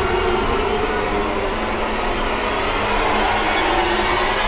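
Background-score drone: a sustained, steady chord held without a beat or any break.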